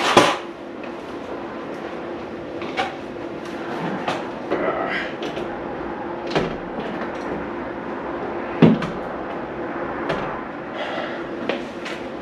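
Heavy sheet-metal solar inverter being lifted by hand onto wall-mounted unistrut channel. Its case knocks and scrapes against the metal strut and wall in a handful of separate clunks, the loudest right at the start, over a faint steady hum.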